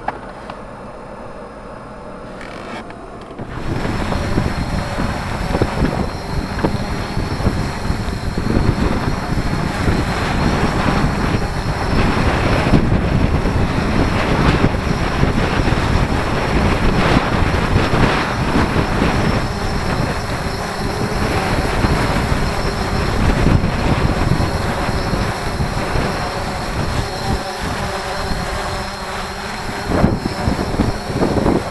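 Strong wind buffeting the microphone in gusts, starting suddenly about three and a half seconds in after a quieter steady noise inside a truck cab. The rotors of a Yuneec Typhoon H hexacopter hovering close by run under the wind.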